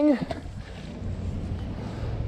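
Wind buffeting the microphone as a low rumble, with a steady low hum joining about a second in.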